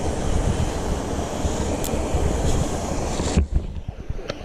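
Small mountain stream rushing over rocks in a steady hiss, with low, uneven wind rumble on the microphone. The hiss drops away suddenly near the end, leaving the low rumble.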